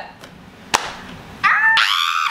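Women laughing: a quiet moment broken by one sharp smack, then a loud, high-pitched squealing laugh from a woman starting about three-quarters of the way through.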